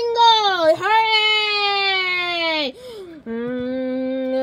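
A child's voice giving a long, drawn-out, high-pitched cry that dips, is held for about two seconds while sliding slowly down, then breaks off. About three seconds in, a steady held musical note starts.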